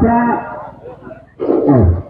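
A man's voice: a short spoken word at the start, then a loud drawn-out vocal sound about a second and a half in that falls in pitch.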